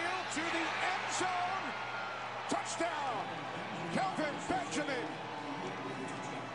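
Football game broadcast audio at low level: stadium crowd noise with a commentator's voice through it and a few brief sharp sounds.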